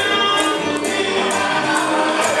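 Live Cuban/Puerto Rican rumba music: several voices singing together in held lines over hand percussion, with regular sharp strikes of jingles or shakers.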